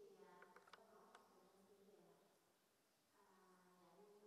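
Near silence: faint room tone with a low, steady humming tone that fades out after about two and a half seconds and returns near the end, and a few soft clicks within the first second or so.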